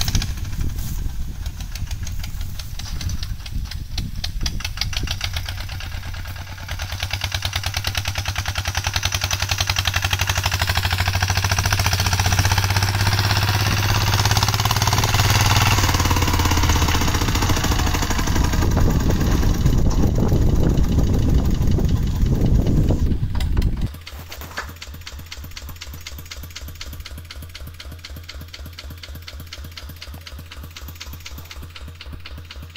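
Single-cylinder diesel engine of a Kubota two-wheel walking tractor running with a rapid, steady knocking beat as it pulls a trailer across the field, growing louder as it comes near. Near the end it drops suddenly to a quieter idle.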